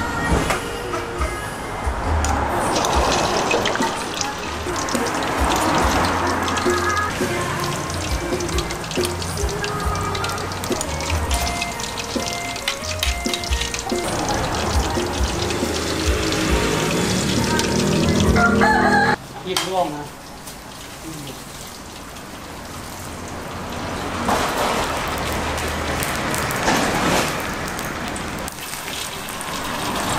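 Background voices and music over stall noise. About two-thirds through, after a sudden change, hot oil sizzles as fish deep-fries in a wok, the sizzle growing louder toward the end.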